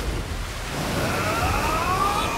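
Animated sound effect of a huge wave surging: a loud, steady rush of water, with a rising tone building over it from about halfway through.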